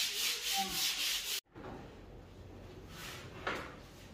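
A painted wall being rubbed down by hand before repainting: quick, even rasping strokes, about five a second, that cut off abruptly about a second and a half in.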